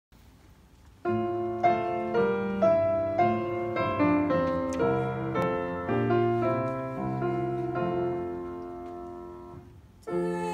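Piano playing a slow introduction of struck chords that begins about a second in; the last chord dies away near the end, just before the singers come in.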